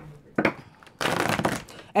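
A deck of tarot cards being handled and shuffled in the hands: a short rustle about half a second in, then a longer, louder rustle of sliding cards in the second half.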